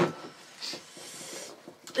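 A person panting through the mouth, short hard breaths against a mouth burning from chilli heat, with a brief hiss of breath about half a second in.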